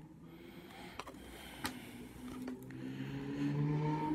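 Trading cards being handled, with a couple of faint clicks in the first half. Then a man's voice holds a low, drawn-out hesitation sound for the last second and a half, getting louder toward the end.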